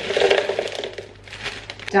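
Frozen berries tipped from a plastic bag into a plastic blender jug: the bag crinkles and the hard berries rattle in, most densely in the first second, then a few more patter in.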